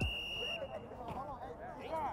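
Faint, distant voices of several people talking on an open field, after a short steady high-pitched tone in the first half-second.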